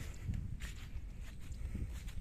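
Footsteps in wet, rain-soaked field mud, several steps over a steady low rumble.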